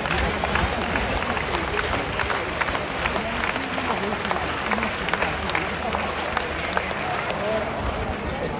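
Stadium crowd clapping steadily, many hands at once, over a hubbub of spectators' voices.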